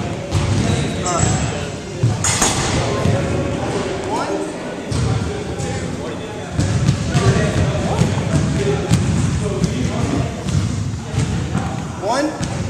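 Indistinct voices of a group talking in a large, echoing gymnasium, with scattered thuds and knocks throughout.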